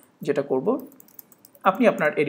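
Computer keyboard keys being typed in short quick clicks as a terminal command is entered, with a man's voice talking over part of it.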